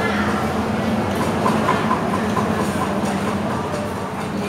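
Restaurant background of diners' voices over a steady low rumble, with a quick run of short high pips, about six a second, in the middle.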